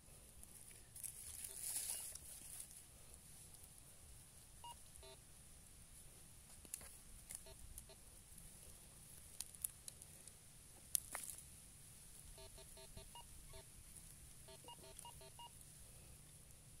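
Metal detector giving short beeps in quick clusters as its coil is held over the dug soil, which signals a metal target there. Near the start there is a rustle of loose soil being handled, and a few sharp clicks come midway.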